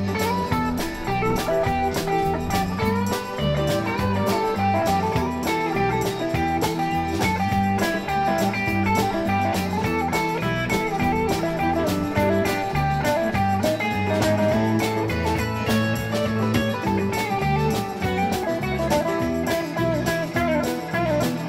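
Live rock band playing a country-rock number: electric guitars, bass and keyboard over a drum kit keeping a steady beat, with a guitar line weaving through.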